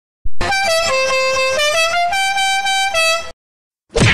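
A loud, buzzy horn sounding a short tune of held notes that step down and back up in pitch. It starts abruptly and cuts off suddenly near the end.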